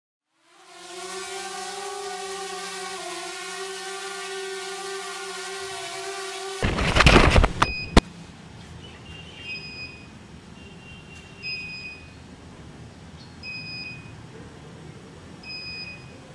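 DJI Mavic Air drone's propellers hovering with a steady whine, then a loud clattering crash about halfway through, ending in a sharp knock. After the crash a short electronic beep sounds about every two seconds.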